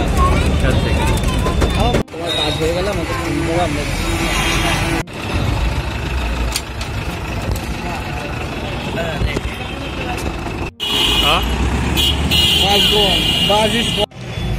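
Bus and road traffic: a steady low engine and road rumble with people's voices over it, and vehicle horns sounding in the last few seconds.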